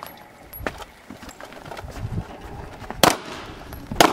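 A single loud gunshot about three seconds in, with a fainter sharp crack under a second in and some rattling of gear and shuffling between.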